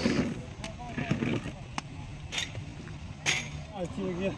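Scattered distant voices of players and onlookers at a low level, with a single sharp click a little under two seconds in.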